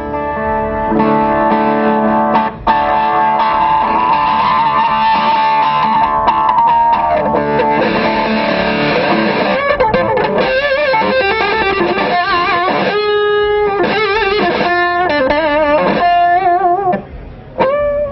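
Electric guitar played through a tuned-filter boost pedal (the Triskelion) with its gain boost on, giving a driven, overtone-rich tone. A long-held chord rings for the first several seconds, its tone shifting as the filter is tweaked. It gives way to single lead notes with wide vibrato and bends.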